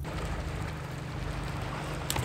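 Steady wash of wind and water around a small fishing boat, with a faint steady hum running under it.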